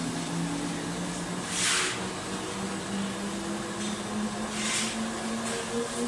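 Servo-driven paper slitting and rewinding machine running with a kraft-paper web: a steady mechanical hum whose pitch creeps slightly upward, with two short hissing bursts about three seconds apart.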